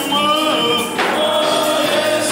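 Gospel praise singing led by men's voices over microphones, with music behind them. Long held notes, a short dip about a second in, then a new phrase begins.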